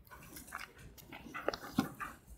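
Faint rustles and light taps of Bible pages being turned by hand on a lectern, a few short sounds spread through the moment.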